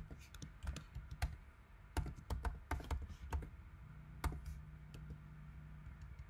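Typing on a computer keyboard: two quick runs of key clicks with a short pause between, then a single keystroke a little after four seconds in. A faint steady low hum sits under the last two seconds.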